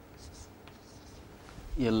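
A few faint, short strokes of chalk scratching on a chalkboard, then a man starts speaking near the end.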